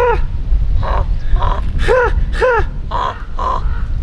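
Raven calling repeatedly: a run of about seven short caws, some lower and some higher in pitch.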